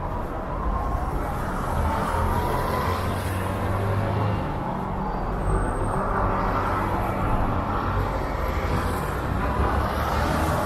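City street traffic: cars and motorcycles driving through an intersection, a continuous wash of engine and tyre noise. One vehicle's engine hums louder for a moment around three to four seconds in.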